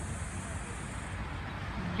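Steady low outdoor city rumble, typical of distant traffic.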